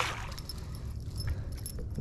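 Metal wires and blades of an Alabama-style umbrella rig clinking lightly as it is handled, after the last of a splash dies away at the start.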